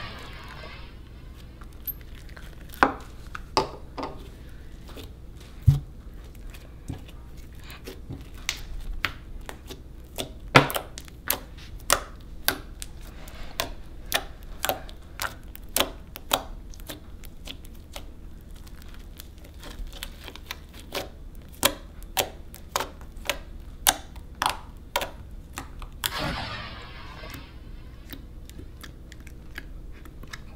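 Liquid-starch glue slime being squeezed and poked by fingers, giving irregular sharp clicks and pops as trapped air escapes, about one or two a second. A brief hiss near the end.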